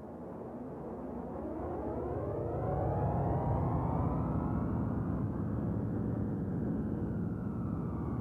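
A low rumbling drone that swells in over the first few seconds and then holds, with sweeping tones that rise and fall in pitch above it.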